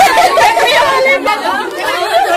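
Several people talking over one another in loud, lively chatter.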